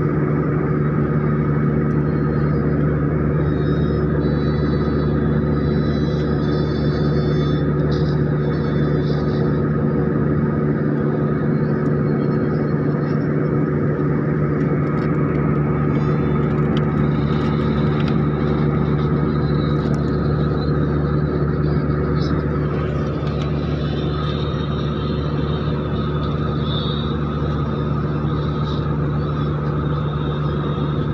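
Airliner cabin drone: the engines and airflow make a steady, unchanging hum with a few fixed tones.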